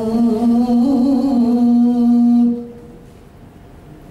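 Male voice chanting a Quran recitation (tilawah) into a microphone, holding one long melodic note that ends about two and a half seconds in. Then only quiet room noise through the sound system.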